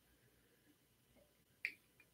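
Near silence, broken by one short, sharp click near the end.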